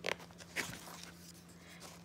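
Paper page of a hardback picture book being turned: two short rustles about half a second apart, the first the louder, over a faint steady low hum.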